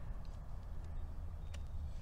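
Low steady rumble of wind on the microphone in an open field, with one faint click about a second and a half in.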